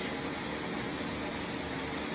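Steady whir of a running fan, with a faint low hum.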